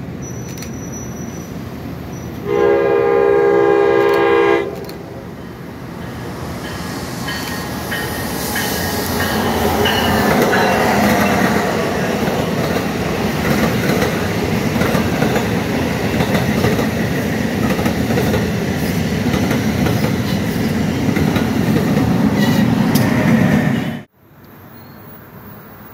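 A New Jersey Transit train sounds one horn blast of about two seconds, a little over two seconds in, as it approaches. It then passes close by: its rumble builds and the multilevel coaches' wheels clatter over the rail joints until the end.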